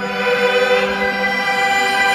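A Chinese traditional orchestra holding sustained chords, the sound sitting in the middle and upper register with little bass.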